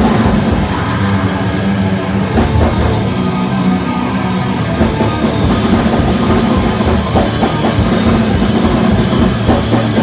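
Hardcore punk band playing live: distorted electric guitar, bass and a drum kit, on a raw bootleg recording. The cymbal wash thins out twice in the first half before the full band carries on.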